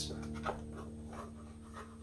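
Faint rustling and scraping of cardboard and paper as a hand rummages inside a cardboard box, with a small tick about half a second in, over a faint steady hum.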